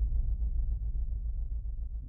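Deep, pulsing low bass rumble from a news-channel logo sting's sound design, sustained between a whoosh-hit and the next rising swell.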